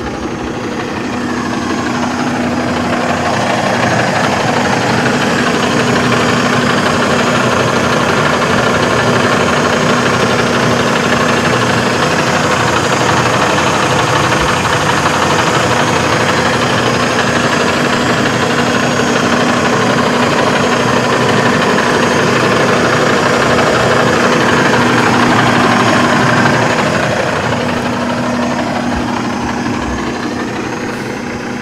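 Diesel engine of a 2022 Hongyan Genlyon C500 8x4 truck idling steadily and smoothly. It grows louder over the first few seconds as it is heard from under the front of the truck, and eases off again near the end.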